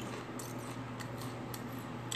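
Faint crinkling and crackling as a snack bag and tortilla chips are handled and a chip is picked out, a few sharp crackles spread through the moment over a steady low hum.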